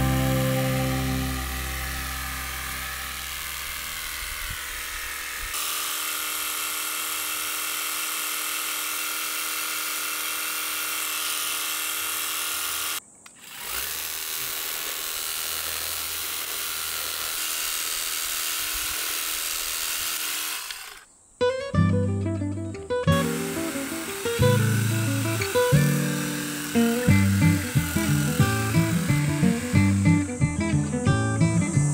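A garden hose spray nozzle hissing steadily as water sprays onto plants, with a short break about 13 seconds in. Soft background music plays under it, and plucked acoustic guitar music takes over about two-thirds of the way through.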